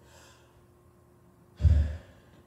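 A man breathing into a handheld microphone: a faint breath at the start, then, about one and a half seconds in, a short, loud gust of breath with a low thump as the air hits the mic.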